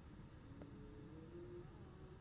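Near silence: room tone, with a faint thin hum.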